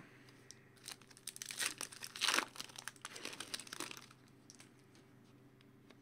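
Foil wrapper of a trading-card pack crinkling in a run of short rustles as it is handled and opened by hand, for about three seconds, then falling quiet.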